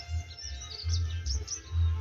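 Small birds chirping, a quick string of short, high, falling chirps in the first second and a half, over an uneven low rumble.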